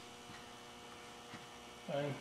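Quiet room tone with a faint, steady electrical hum; a voice starts briefly near the end.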